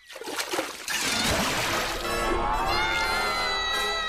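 Cartoon sound effects: a rush of splashing water for about two seconds, then a long, high scream that slowly falls in pitch and is still going at the end.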